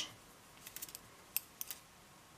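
Faint, light clicks of knitting needles tapping together as the work is handled: a quick little run of clicks partway in, then a few single ones.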